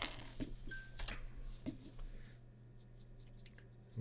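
Faint scattered clicks and a short rustle of painting tools being handled at a desk, over a steady low hum.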